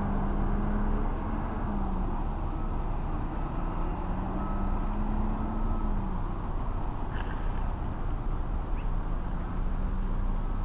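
Steady engine hum and road noise from inside a moving car, the engine's pitch easing slightly up and down.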